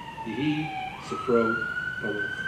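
Emergency vehicle siren wailing: its pitch falls slowly, then swoops back up about a second in and holds high.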